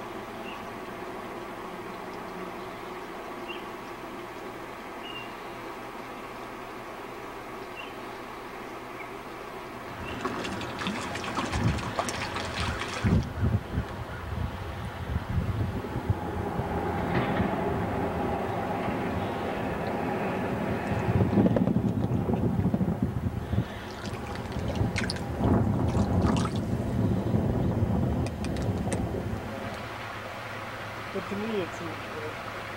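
Steady background noise, then from about ten seconds in, louder irregular splashing and sloshing of water with knocks and handling noise, as from wading and playing a fish, running on until near the end.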